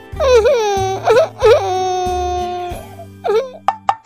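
A high, cartoonish voice crying out over children's background music: its pitch dips sharply three times, then it holds one long wailing note, with a short cry a little later.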